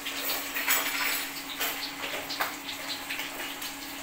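Water moving in an aluminium pot of soaking glutinous rice, with a few light knocks of the pot, over a steady low hum.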